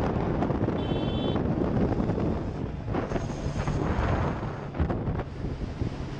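Wind rushing over a helmet camera's microphone on a moving motorcycle, with the bike's engine running steadily underneath.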